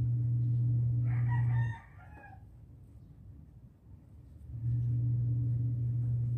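A rooster crows once, about a second in, a call of about a second and a half. Under it a loud steady low hum stops abruptly just after the crow and comes back a few seconds later.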